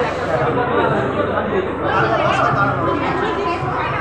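Chatter of several people talking at once in a hall, a steady mix of voices.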